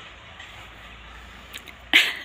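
Low steady background noise with no speech, broken by a couple of faint clicks and then one short sharp sound right at the end.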